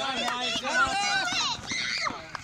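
Children's voices calling out on the field during play, with other voices overlapping.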